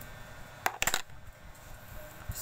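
Metal eyelash curler making a short cluster of sharp metallic clicks and clinks, about two-thirds of a second in.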